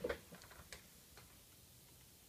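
Light handling noise as a notepad is moved on a desk: a soft knock right at the start, then a few faint ticks within the first second, over quiet room noise.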